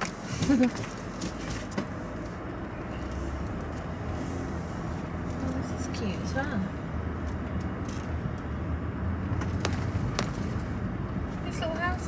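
Car engine and road noise heard from inside the cabin while driving, a steady low rumble.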